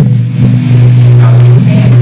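A single low note held steady and loud on an amplified electric string instrument, a sustained drone with ringing overtones ahead of the song.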